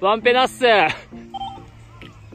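A voice calls out in two quick bursts with sharply bending pitch, followed by softer short electronic tones.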